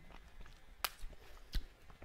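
Two short, sharp clicks, the second about 0.7 s after the first, over quiet room tone.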